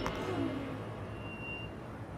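A quiet pause with faint, even outdoor street background noise and a brief faint high tone about halfway through.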